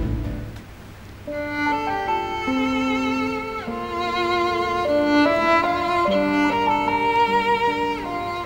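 Background music: a slow violin melody with vibrato over other held string notes, coming in about a second in after a brief lull.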